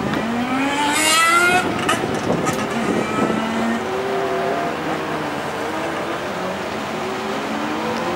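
An engine revving and accelerating, its pitch climbing several times in succession.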